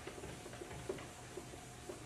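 Chalkboard eraser rubbing across a blackboard in repeated short, faint strokes, about two or three a second.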